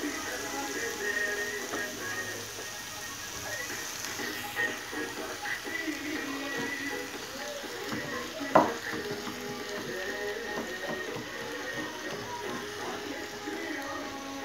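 Minced meat, onions, peppers and tomatoes sizzling in a frying pan as a spatula stirs them, with one sharp knock of the spatula against the pan a little past halfway. Music or voices play faintly in the background.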